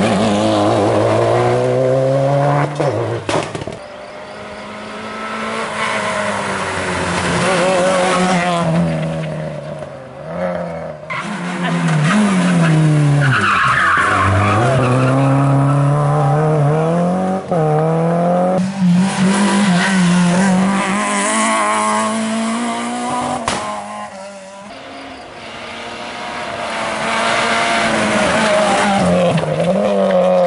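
Rally cars passing one after another at speed, each engine note climbing and falling with throttle and gear changes; among them a Subaru Impreza and a Renault Clio.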